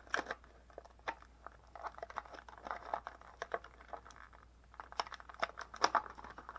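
Thin clear plastic blister tray crinkling and crackling as an action figure is pulled out of it, in irregular crackles with a short lull about four seconds in and a run of sharper cracks near the end.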